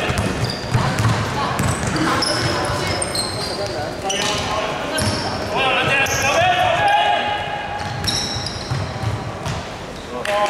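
A basketball bouncing on a hardwood gym floor during full-court play, with short high sneaker squeaks and players' voices echoing around the hall.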